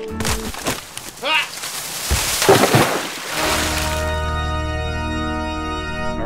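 A dead standing tree being shoved over: about three seconds of rough cracking and crashing, with a voice crying out, then a long held musical chord.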